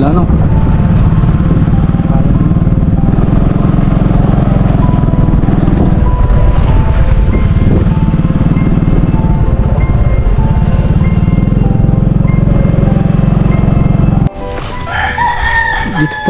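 Small motorcycle ridden along a rough dirt road, its engine and road noise loud and steady. The sound cuts off suddenly near the end, and a rooster crows.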